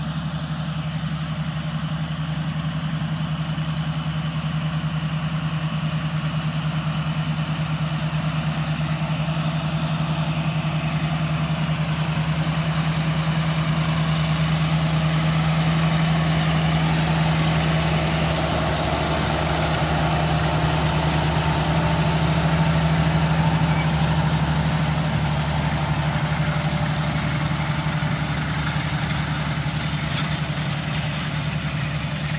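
John Deere tractor's diesel engine running steadily as it pulls a row-crop planter past. It grows louder as the tractor draws near, then eases off a little near the end.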